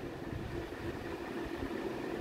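Steady low background hiss with a faint, even hum: room tone.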